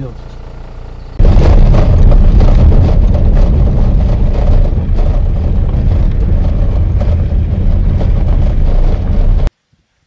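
Wind buffeting the camera microphone: a loud, low, rumbling noise without any clear pitch. It starts abruptly about a second in and cuts off shortly before the end.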